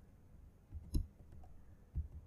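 Laptop keyboard keystrokes: a few scattered taps, the loudest about a second in.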